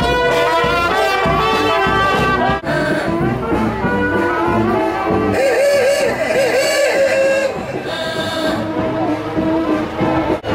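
Marching brass band playing a tune as it parades past, with a sousaphone among the instruments.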